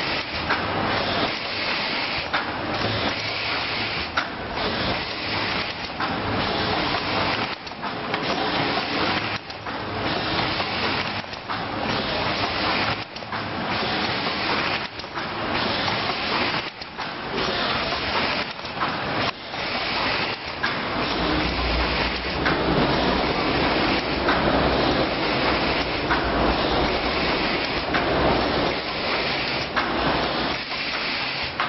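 Automatic horizontal cartoning machine running: a dense mechanical clatter with short dips every second or two. About two-thirds of the way in, a louder low hum joins it.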